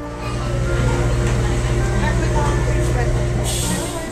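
A loud, steady, low machine hum with a fine rapid pulse, like a motor running, with people's voices in the background. A short burst of hiss comes about three and a half seconds in.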